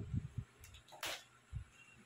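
Faint handling noises from picking up the pump's power cord and plug: a few soft low thumps at the start, a brief rustle about a second in, and one more light thump shortly after.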